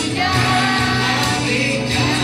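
Music with a choir singing.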